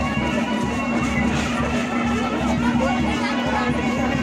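Ghumar folk dance music: a reedy, shawm-like wind instrument holds a steady drone-like tone over thick, pulsing drumming, with crowd voices underneath.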